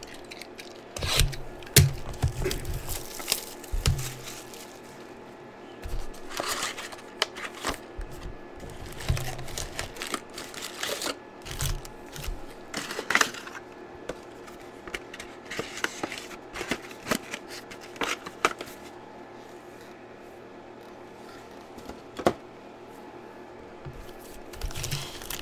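A cardboard hobby box of trading cards being opened and its foil card packs handled and torn: irregular rustling, crinkling, tearing and scraping with sharp clicks, loudest about two seconds in.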